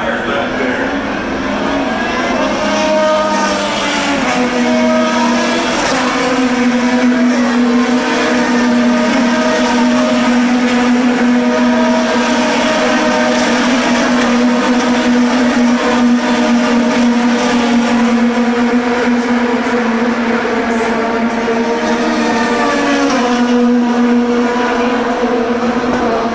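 A pack of IndyCars running at speed through the corner, many twin-turbo V6 engines overlapping in one loud, continuous sound, the pitch mostly steady with short rises early and near the end.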